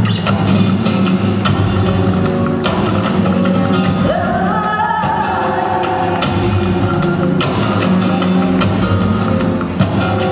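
Flamenco music with guitar playing; about four seconds in, a voice slides up into one long held note.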